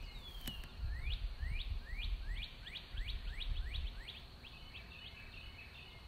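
A bird calling: a falling whistle, then a run of about ten quick rising notes that speed up, then softer chattering near the end, over a low rumble.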